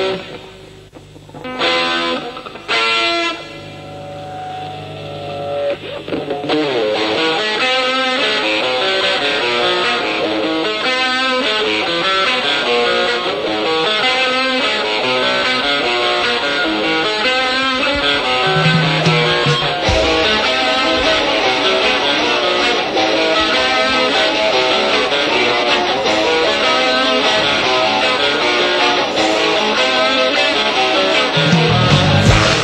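Punk rock band playing live, led by electric guitar: a few short, separate chord stabs with gaps between them, then about six seconds in the full band comes in with steady, loud, guitar-driven playing.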